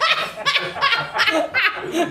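A woman laughing hard, a belly laugh in a rhythmic series of loud bursts about three a second.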